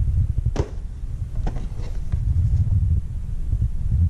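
A steady low rumble, with a few light clicks and crinkles of plastic blister-pack toy packaging being handled and set down.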